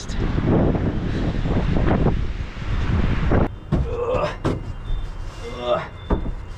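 Wind buffeting the microphone. After about three and a half seconds it stops and a few sharp wooden knocks follow as cedar boards are set down on the sauna's wooden bench.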